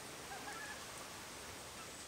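Faint woodland ambience: a soft, even hiss with a few faint bird calls in the first second.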